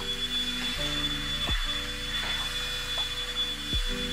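Handheld vacuum cleaner running over the pile of a tufted rug, its motor holding a steady high whine. Background music with deep bass notes plays under it, two of them dropping in pitch.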